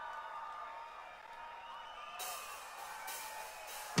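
Faint open-air concert crowd cheering and whooping, with quiet music underneath, as a live concert recording begins before the band comes in.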